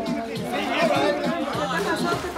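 Several people chattering over one another, with music playing in the background.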